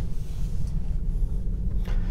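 Low, steady road rumble heard inside the cabin of a Tesla Model 3 electric car driving slowly, with no engine note.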